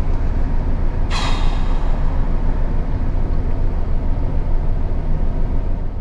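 Steady low rumble of a car heard from inside the cabin, with a short hiss about a second in that dies away within half a second.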